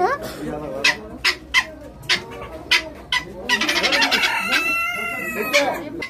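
Caged helmeted guineafowl giving repeated short, sharp calls. A rooster crows once, a call about two seconds long, starting about three and a half seconds in.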